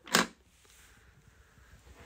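A single short plastic clack from the fold-down carrying handle of the power station being let down against its case, followed by quiet room tone.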